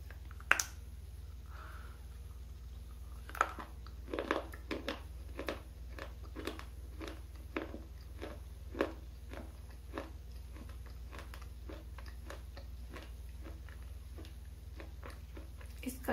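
Close-miked bites into a hard, dry, chalky bar: a sharp snap about half a second in and another about three and a half seconds in. These are followed by a run of crisp crunches as it is chewed, which slow and fade out after about ten seconds.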